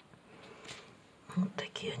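A quiet room for a little over a second, then a woman starts speaking near the end.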